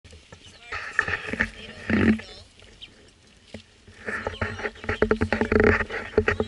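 Animal calls, rough and rapidly pulsing, in two bouts: one about a second in and a longer one from about four seconds in.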